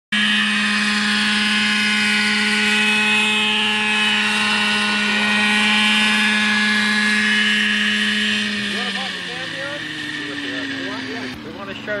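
Graupner Heli-Max 60 radio-controlled model helicopter hovering, its small glow-fuel engine and rotors running at a steady high buzz. After about eight and a half seconds the pitch drops as the engine is throttled back.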